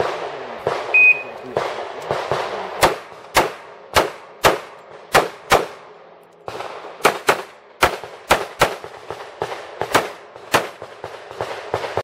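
Shot timer's short start beep about a second in, then a Para-Ordnance P14.45 .45 ACP pistol firing a long string of shots, roughly two a second, with a pause of about a second near the middle.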